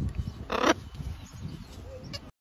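A macaw gives one short, harsh squawk about half a second in, over a steady low rumble.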